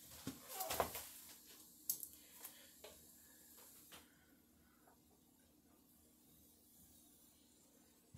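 A few faint clicks and knocks of handling at a microwave and its grill dish in the first half, then only a faint steady hum.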